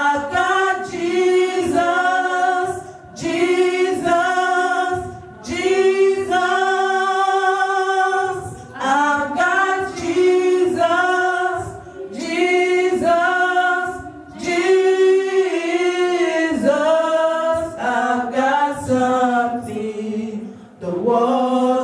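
Three women singing a gospel song together into microphones, unaccompanied, in phrases of a few seconds with brief breaks for breath between them.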